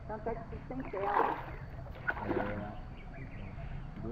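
Indistinct talking in short bursts, over a steady low rumble.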